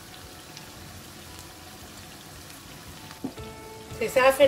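Egg stew in tomato and oil sizzling and bubbling steadily in a frying pan, with a single knock a little after three seconds in.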